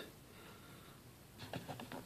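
Mostly quiet room tone, then a few faint clicks near the end as the rotary selector dial of a Cen-Tech digital multimeter is turned to the 20 mA current range.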